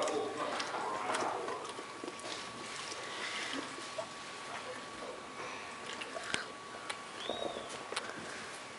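A dog chewing and licking at a rubber Kong toy, working food out of it, with irregular clicks and wet smacks.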